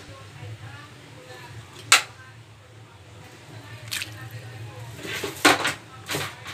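A few sharp clicks and knocks: the loudest about two seconds in, another near four seconds, and a quick cluster near the end. Under them run a steady low hum and faint voices.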